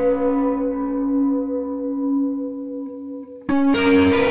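Sampled electric guitar from a cinematic guitar sound-effects patch, run through effects: one held note rings on and slowly fades. About three and a half seconds in, a new, brighter, more distorted note comes in.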